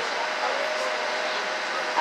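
Steady running noise of a tour boat under way, heard from inside its passenger cabin: an even, unchanging drone with a faint steady hum.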